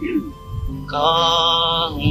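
Singing in a chant-like style: after a quieter start, a long note is held steady from about a second in.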